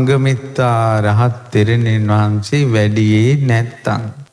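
A Buddhist monk chanting a verse in a slow, drawn-out melody: about four long sung phrases with short breaths between them.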